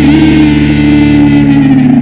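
Background rock music: a distorted electric guitar holds one long note with a slight vibrato, starting to bend down in pitch near the end.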